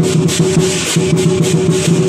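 Temple procession percussion: rapid, even clashes of hand cymbals in a steady rhythm, over a continuous low pitched tone.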